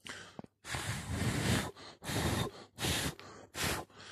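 A person blowing hard in about four puffs, a long one followed by three shorter ones, clearing loose ground foam off freshly glued model scenery.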